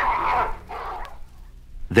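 Dogs yelping as a sound effect, fading away within the first second.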